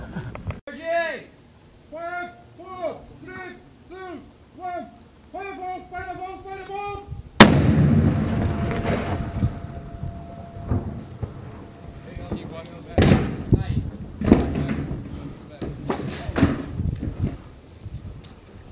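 Repeated short shouted calls, then a single sharp blast from an explosive breaching charge on a plywood door about seven seconds in, with a rumble that dies away over a few seconds. Several more sharp bangs follow near the end.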